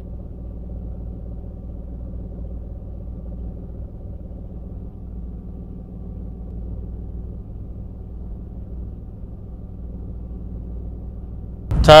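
Steady low rumble of a parked car's engine idling, heard from inside the cabin.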